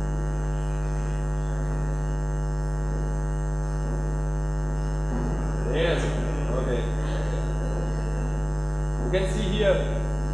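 Steady electrical mains hum with a ladder of even overtones running under everything, with a voice heard briefly about five seconds in and again near the end.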